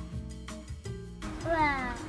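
Soft background music with held notes, then near the end a voice exclaims a high, drawn-out "wow" whose pitch rises.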